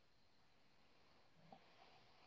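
Near silence: faint room tone, with one small faint tick about one and a half seconds in.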